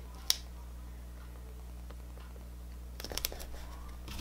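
Washi tape being handled and pressed onto a paper planner page: one sharp tick just after the start, then a short run of small crackles about three seconds in, over a steady low hum.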